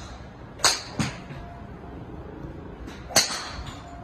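Sharp cracks of golf clubs striking balls at a driving range: two about half a second apart near the start and another about three seconds in, over a steady background hiss.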